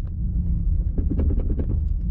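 Low, steady rumble of a car running, heard from inside the cabin, with a few light clicks or rattles around the middle.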